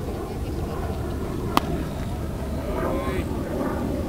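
A single sharp crack of a softball pitch meeting the batter's bat or the catcher's glove, about one and a half seconds in, over a steady low rumble of wind on the microphone. Voices call out briefly near the end.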